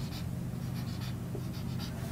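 Marker pen writing on a whiteboard in a series of short strokes as letters are marked on a diagram.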